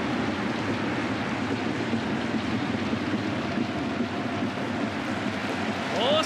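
Football stadium crowd noise: a steady, dense roar from the supporters in the stands.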